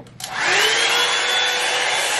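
Revlon One-Step Dryer and Volumizer Titanium Max Edition hot-air brush switched on with a click: its motor spins up with a rising whine over about half a second, then runs at a steady pitch with a loud rush of blowing air.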